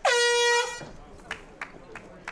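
Cageside horn sounding once, a loud steady tone lasting under a second, marking the end of round one. A couple of faint knocks follow.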